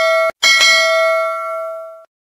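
Notification-bell sound effect of a subscribe-button animation: a bright bell ding that cuts off short, then is struck again and left ringing, fading out near the end.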